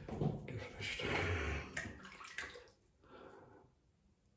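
Water running and splashing at a bathroom basin during a wet shave, dying away about three seconds in.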